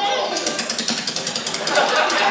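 Foley handcuffs rattling and clicking rapidly, starting about half a second in, used as the sound effect for a film fight scene and played back over a theatre's speakers, with film voices underneath.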